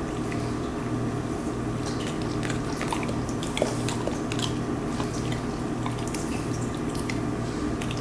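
Siberian husky's wet mouth sounds as he sniffs and licks at a lime slice held to his nose: scattered small, drip-like tongue and lip clicks. Underneath is a steady low hum that pulses at an even pace.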